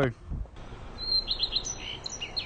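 Small birds chirping: a quick run of short, high chirps that begins about a second in.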